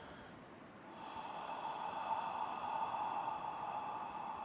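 A man's long, slow, audible exhale: a soft breathy rush that starts about a second in and lasts about three and a half seconds. It is a deliberate, paced out-breath of a guided meditation breathing exercise.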